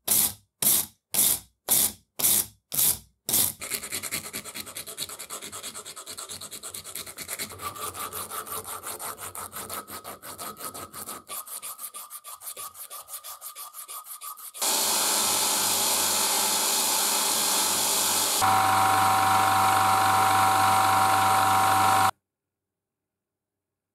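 A brush scrubbing a small steel screw eye in a vise in loud strokes, about two a second. Then quicker, quieter rasping as strips of abrasive cloth are worked back and forth through the eye. From about two-thirds in, a machine runs with a steady rushing sound, which grows louder with a steady whine for the last few seconds.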